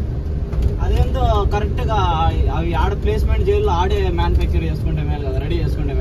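A voice, with some long wavering held notes, over the steady low drone of a truck's engine and road noise inside the cab while driving.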